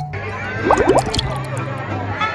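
Mariachi band playing live: deep, steady bass notes, with a few quick rising squeals a little past the middle.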